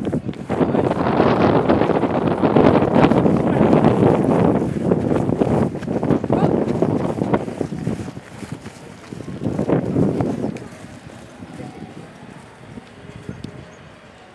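Wind buffeting the microphone outdoors in strong gusts for most of the first eight seconds and once more about ten seconds in, then easing off.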